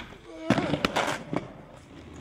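Inline skates landing hard on concrete after a jump: a quick run of sharp clacks and scrapes about half a second to one and a half seconds in, the loudest at the start.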